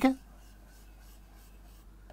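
Faint chalk strokes on a blackboard as a diagram is drawn: short scratching strokes of a chalk stick against the board.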